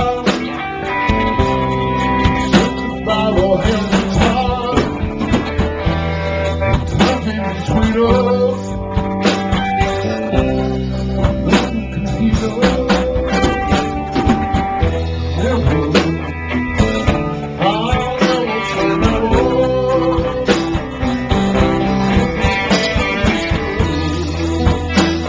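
Live rock band playing: electric guitars, electric bass and drum kit, with held guitar notes over a steady drum beat.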